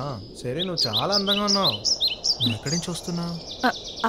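Small birds chirping in a quick run of short, high calls for about two seconds, alongside a man's drawn-out voice.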